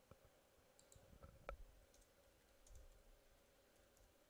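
Near silence with a few faint, scattered clicks of computer keyboard keys being typed.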